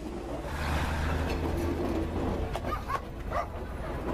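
State Railway of Thailand train passing at close range: a steady low rumble under rushing, clattering noise. Near the end come a few short high-pitched yelps.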